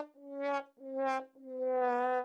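A "sad trombone" fail sound effect: four brass notes, each swelling and fading, the last one held longest, marking a failure.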